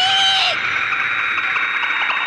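A short, sharp high-pitched shout in the first half second, then a steady loud rushing whoosh as a judoka is thrown through the air in an animated judo match.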